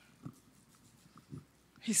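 A woman's voice through a microphone, mostly a quiet pause with two faint short sounds, then speech starting loudly near the end.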